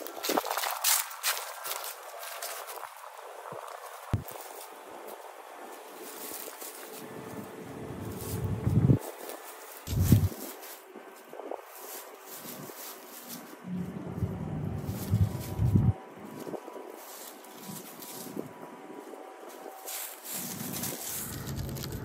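Footsteps through dry fallen leaves, coming and going in irregular spells, with quiet outdoor background in between.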